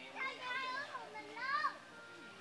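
A child's high-pitched voice calling out in two short rising-and-falling phrases, the second one louder.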